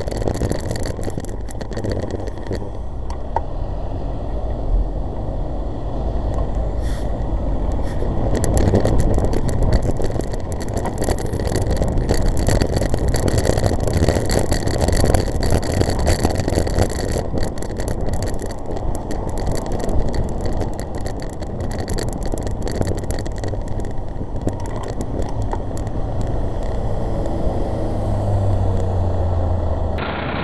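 City traffic heard from a moving bicycle: car engines running and road noise, with crackling wind buffet on the microphone. A low engine hum grows stronger near the end, as a bus sits alongside.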